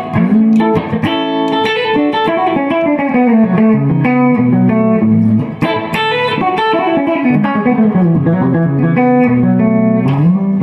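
1967 Gibson ES-335 semi-hollow electric guitar on both pickups, played through a 1965 Fender Deluxe Reverb amp: a melodic line of quick single notes that twice walks down to lower, held notes.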